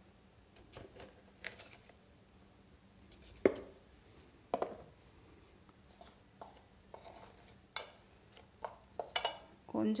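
Scattered light taps and knocks of a spoon against a mixing bowl as dry cornflour is stirred, the sharpest about three and a half seconds in.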